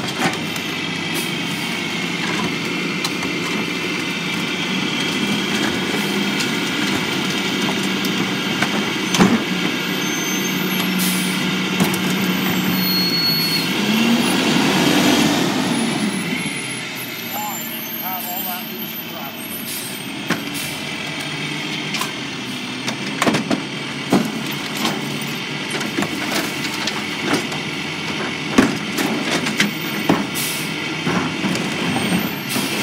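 Rear-loader garbage truck running with a steady engine drone and a high hydraulic whine while the packer works, then the engine rising as the truck pulls forward about halfway through. In the last part, sharp knocks and bangs of plastic garbage toters being handled at the hopper.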